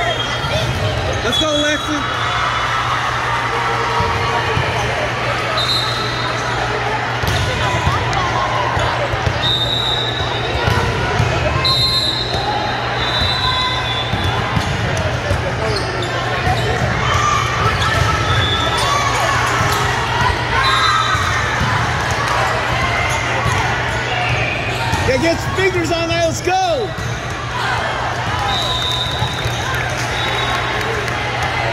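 Volleyball hall din: overlapping voices of many players and spectators echoing in a large hall, with volleyballs being hit and bouncing on the sport-court floor. A steady low hum runs underneath, and a few short high tones cut through.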